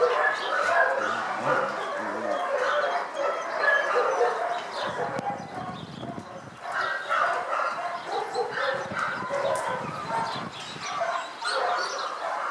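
Several dogs barking and yipping at once, short calls overlapping in a dense, continuous chorus that thins briefly in the middle.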